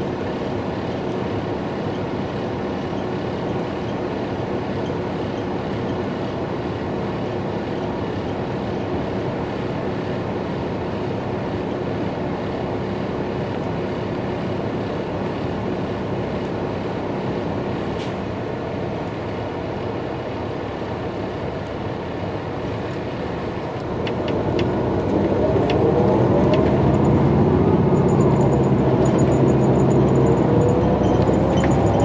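Daimler/Detroit Diesel DD13 engine of a 2017 MCI J4500 coach heard from inside the cabin, idling steadily while the coach stands still. About six seconds before the end it pulls away: the engine grows louder and its note rises as the coach accelerates, with a few sharp clicks as it moves off.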